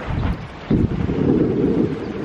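Wind buffeting the microphone, a rough low rumble that grows louder just under a second in.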